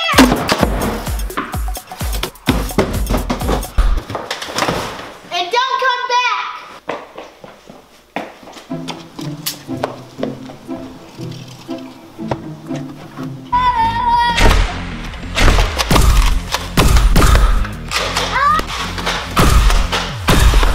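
Background music with a beat, with a few short voice-like cries and several thuds. The beat gets heavier a little past halfway.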